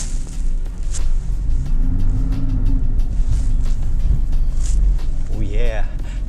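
Porsche Cayman 987's flat-six engine heard from inside the cabin as the car slithers on snow, a steady low rumble with the revs rising and falling once near the middle. Traction control is cutting in and holding the engine to about 1500 RPM.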